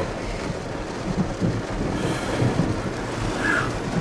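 Steady low rumble and hiss of background noise inside a vehicle cabin.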